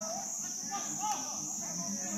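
A steady high-pitched insect chorus, with faint distant voices calling now and then.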